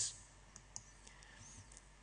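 Quiet pause in speech: faint room tone of a hall, with a small click about three quarters of a second in and a few fainter ticks.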